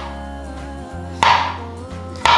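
A knife cuts through a zucchini and strikes a wooden cutting board once, about a second in, as it slices off a thick round. Steady background music plays throughout.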